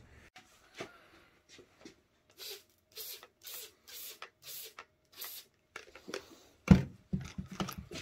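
Trigger spray bottle misting water in a run of about six quick sprays, roughly two a second. Near the end there is a loud knock and some handling clatter.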